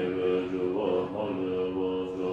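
Tibetan Buddhist monks chanting together in low, long-held tones, their voices wavering slightly about a second in.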